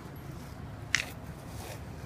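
A worn, dog-slobbered soccer ball being gripped and picked up by hand, with one short, sharp squelch about a second in.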